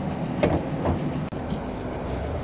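Corvette C8 frunk latch releasing with a sharp click about half a second in, set off by the interior release button, with a weaker click shortly after, over a steady low hum.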